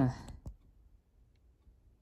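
A man's short breathy "haa" sigh, followed about half a second in by a single small click, then quiet room tone with a couple of faint ticks.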